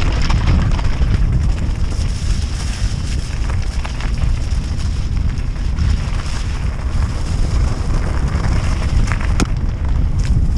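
Wind rumbling over the action camera's microphone as a Norco Aurum downhill mountain bike rolls down a gravel and dirt trail, with tyre crunch and the odd sharp knock from the bike, one about four seconds in and another near the end.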